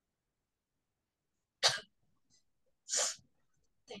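A young woman coughing twice, the first cough about a second and a half in and the second about a second and a quarter later; she is unwell with a fever.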